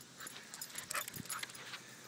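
A dog giving several short, faint cries in quick succession over about a second and a half.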